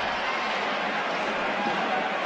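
Steady crowd noise in an ice hockey arena just after a goal.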